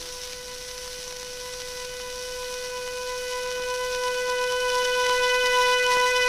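Accordion holding one long note that swells steadily louder, played from a 1912 Columbia 78 rpm shellac record with a steady surface hiss underneath.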